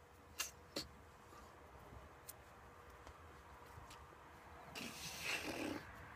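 Faint sounds of hands signing: two sharp slaps in the first second and another about two seconds in, then a rustle lasting about a second near the end. A faint steady hum runs underneath.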